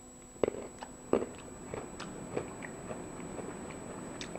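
A person chewing a chewable Tums antacid tablet. There are two sharp crunches in the first second or so, then quieter crunching as it breaks up.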